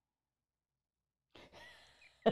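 Near silence, then about two-thirds of the way in a short, faint breathy exhale, like a sigh just before a laugh.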